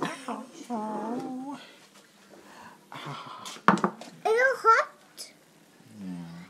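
A young child's voice making short wordless sounds in two bursts, with a sharp knock at the start and another about halfway through.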